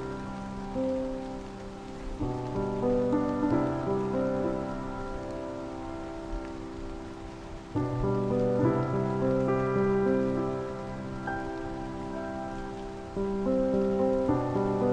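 Slow, soft piano improvisation on a sampled grand piano (Spitfire LABS Autograph Grand) played from a digital keyboard. Chords ring on, with new ones struck about every five seconds, over a steady hiss of rain ambience.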